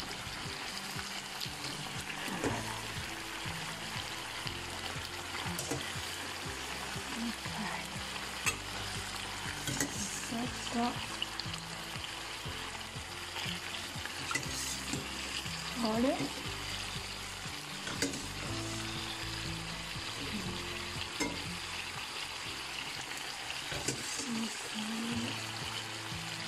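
Rigatoni and crisped guanciale sizzling steadily in a frying pan, in the rendered pork fat with some pasta cooking water, while the pasta is stirred and turned with a few brief scrapes of the utensil.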